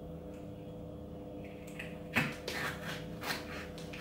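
A few light knife taps on a chopping board as vegetables are sliced, the sharpest a little over two seconds in, over a steady low hum.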